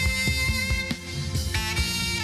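Live band music: a saxophone plays a sustained melody over electric bass, drum kit and keyboard, with a steady drum beat underneath.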